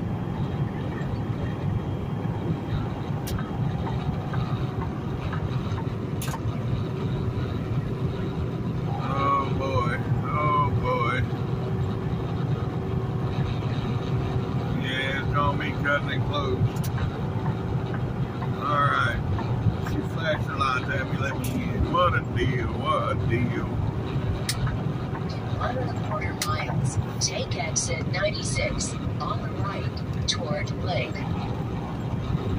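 Semi-truck's diesel engine and road noise running steadily inside the cab at highway speed, with a voice talking now and then over it. A quick run of clicks comes near the end.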